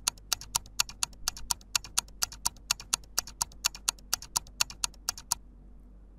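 Countdown timer sound effect: rapid, evenly spaced ticking, about four to five ticks a second, which stops shortly before the time is up.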